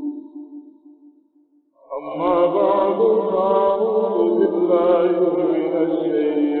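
A man's voice chanting in a slow, melodic style. A held note fades away over the first second and a half, and after a short pause a new phrase begins about two seconds in, with long notes and a wavering, ornamented pitch.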